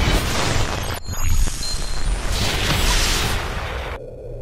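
Cinematic trailer sound effects: a deep boom with a heavy low rumble, a second hit about a second in, then a swelling whoosh that fades near the end.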